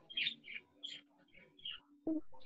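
A small bird chirping faintly, about five short high chirps in quick succession.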